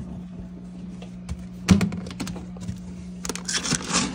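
Clicks and knocks of a plastic storage bin and its lid being handled, with one louder knock about two seconds in, then a denser rustling rattle of dry dog kibble as a hand digs into it near the end. A steady low hum runs underneath.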